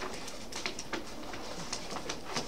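Scattered light clicks and rustles of papers being handled at meeting tables, over a steady faint room background.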